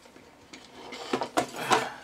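A few short knocks and clatters of hard plastic objects being handled and set down on a wooden desk, starting about half a second in, the loudest near the end.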